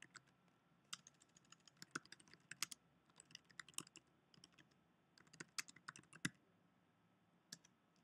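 Faint typing on a computer keyboard: irregular keystrokes through the first six seconds or so, then a single key tap near the end.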